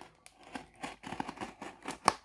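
Hobby knife blade drawn along the seam of a cardboard case, slitting it open with a run of short, irregular scratchy cutting sounds.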